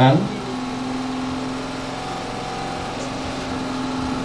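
Steady mechanical hum, like a running engine or machine, with faint steady tones through it. A man's amplified voice is heard briefly at the very start.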